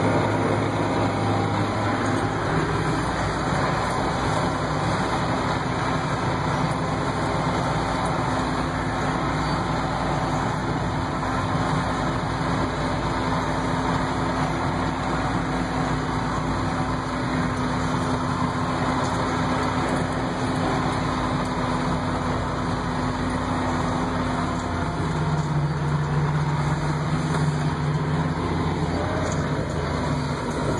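John Deere tractor's diesel engine running steadily, heard from inside the cab while driving. About 25 seconds in its note changes, with a deeper tone for a few seconds.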